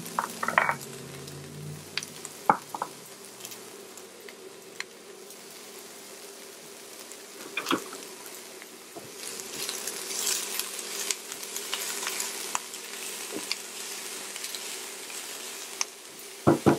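Diced onions sizzling in hot olive oil in a stainless steel saucepan, with scattered pops and crackles. The sizzle thickens a little past the middle.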